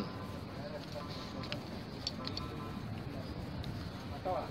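Quiet, steady background noise with faint voices and a few small clicks around the middle.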